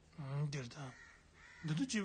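A man's voice speaking, in two short phrases with a brief pause between.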